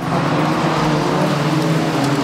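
Formula 1 cars' 1.6-litre turbocharged V6 hybrid engines running at racing speed past the track fence. It is a loud, steady engine note that comes in suddenly, and its pitch sinks slowly.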